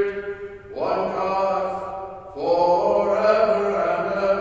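A man's solo voice chanting a liturgical text, unaccompanied, in long held notes. The chant pauses briefly just before a second in and again a little after two seconds, and each new phrase begins with a rising note.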